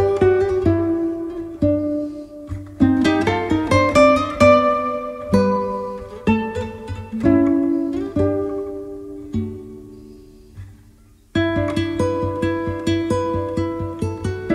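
Background music of plucked guitar, a melody of separate picked notes. The notes thin out and fade towards the end, then the playing starts again abruptly about two and a half seconds before the end.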